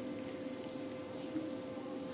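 Quiet, steady background noise with a faint constant hum and no distinct event.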